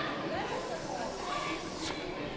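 A hiss lasting about a second and a half, over faint voices in a large hall.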